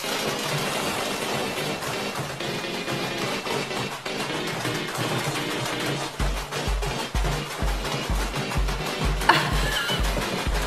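Music with a steady bass beat that comes in about six seconds in, over a washing machine banging and clattering as it spins with a brick in its drum, shaking itself apart.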